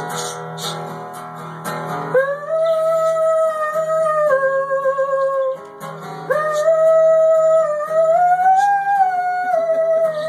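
Acoustic guitar strummed steadily while a man sings long held notes without words. The voice comes in about two seconds in and holds one long phrase, then a second one that climbs higher near the end before settling back down.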